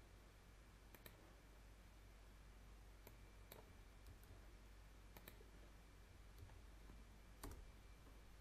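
Faint computer mouse clicks, about six of them spread through a near-silent stretch, with two in quick succession around five seconds in, over faint room hum.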